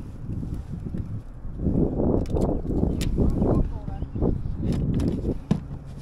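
Scattered knocks and clicks from a fish being handled in a rubber landing net on a plastic fishing kayak, over a steady low rumble of wind on the microphone.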